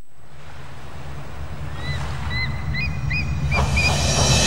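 Ocean waves washing, joined about two seconds in by a string of short seagull cries; the sound swells louder near the end.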